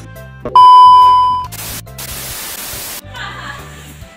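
Background music with a steady bass beat, over which an edited-in electronic beep sounds loudly about half a second in, holding one pitch for about a second and fading. A burst of static hiss follows for about a second and a half and cuts off suddenly.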